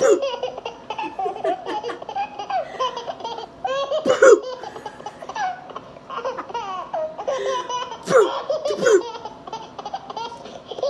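Hearty, high-pitched laughter in repeated bursts with no words, strongest about four seconds in and again near the end.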